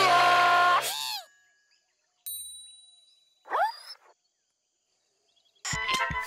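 Cartoon sound effects: a held chord that bends downward and cuts off about a second in, a bright ding a little after two seconds, then a short rising whistle. Background music with a steady beat starts near the end.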